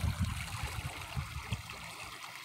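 Small waves lapping and trickling close by, with soft irregular low thumps of water against a hull.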